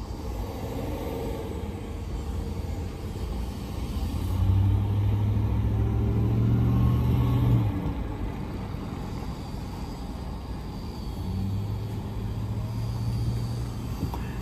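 Low, steady motor vehicle engine rumble, swelling louder twice: from about four seconds in to about eight, and again near the end.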